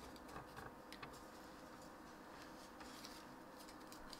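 Near silence with a few faint, short crinkles and ticks from a small strip of paper being fan-folded by hand.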